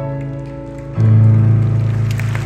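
Live grand piano and string orchestra holding a chord, with a louder, bass-heavy chord coming in about a second in, as the piece closes.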